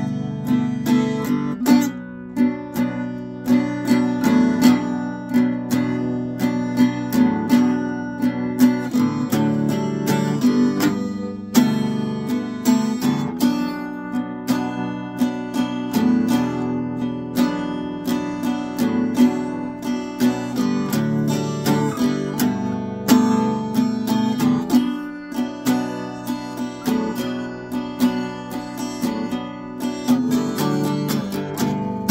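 Steel-string acoustic guitar strummed in a down-and-up pattern, cycling through a G6/9, B minor and D chord progression with many regular strokes.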